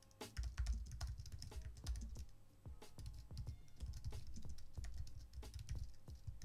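Typing on a computer keyboard: a fast, irregular run of key clicks.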